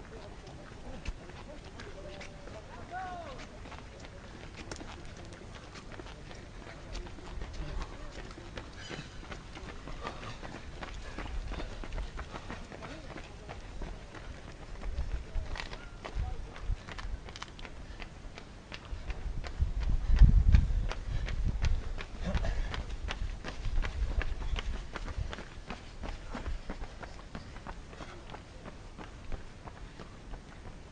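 Runners' footsteps on the asphalt as they pass, heard as a scatter of light steps, with a low rumble on the microphone that swells about two-thirds of the way through.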